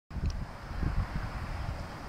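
Wind buffeting a handheld camera's microphone, an uneven low rumble.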